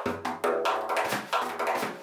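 Large hand-held frame drum with a natural skin head, played with the fingers in a quick rhythmic pattern of about four or five strokes a second, each stroke leaving a low ringing boom.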